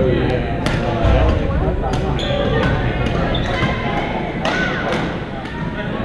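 Badminton rackets hitting shuttlecocks: several sharp pops spread irregularly through the rally. Between them are court shoes squeaking on the gym floor and players' voices.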